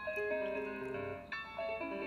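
Piano music: a few held chords that change to new notes a little after the start and again about a second and a half in.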